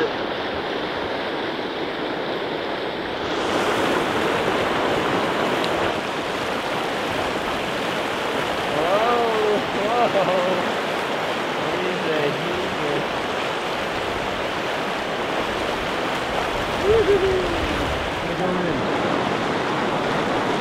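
Mountain stream rushing over rocks in whitewater rapids, a steady wash of water that grows a little fuller about three seconds in.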